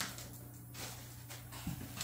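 Faint handling of cardboard packaging: light rustles and scrapes as a box is lifted out of a shipping carton, with a soft knock near the end, over a steady low hum.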